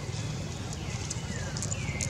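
Short, high, falling animal chirps, roughly one a second, with one longer downward glide about a second in, over a steady low rumble.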